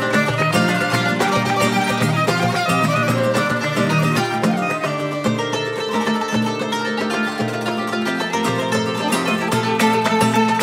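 Arab-Andalusian and flamenco ensemble playing a Garnati-style piece. Darbuka hand drumming runs under plucked flamenco guitar and kanun, with bowed violin.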